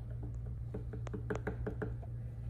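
Wooden craft stick stirring water in a small plastic cup, knocking against the cup's sides in a quick run of light, irregular clicks.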